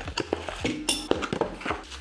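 Cardboard box and paper wrapping handled while small accessory parts are unpacked: rustling, tapping and small clicks, with a brief high squeak about a second in.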